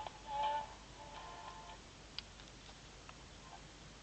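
Faint music from the AM demo transmitter, received by a crystal set, fading in and out in snatches over the first two seconds as the receiver is tuned across the station. A sharp click comes about two seconds in, with a fainter tick a second later.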